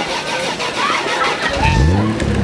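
A car engine starts about one and a half seconds in, its pitch rising briefly and then settling into a steady run.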